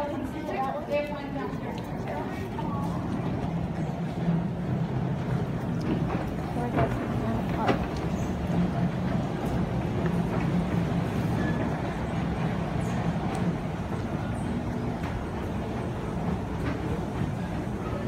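Fujitec escalator running: a steady low hum and rumble from the moving steps and drive, with a few sharp clicks.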